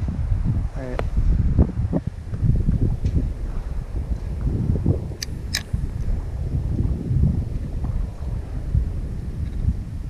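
Wind buffeting the microphone, a steady low rumble throughout, with two sharp clicks a little over five seconds in.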